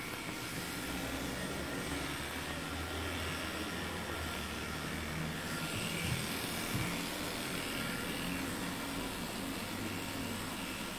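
Electric dog grooming clipper running steadily, a constant motor hum.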